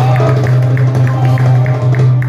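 Live Middle Eastern ensemble music of violin, qanun and hand drum, with a steady low held note under short repeating melodic notes.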